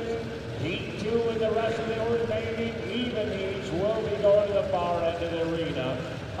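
A man talking over a public-address loudspeaker.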